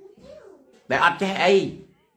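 A man's voice, strained and wavering in pitch, in one loud stretch of about a second near the middle; a fainter wavering sound comes before it.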